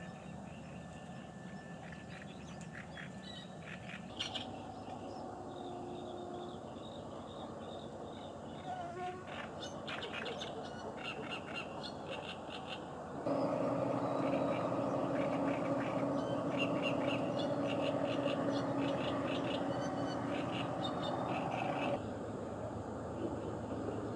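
Small birds chirping repeatedly in a reed bed, in short high clusters. About halfway through, the background turns louder with a steady low hum underneath, and the chirping carries on over it.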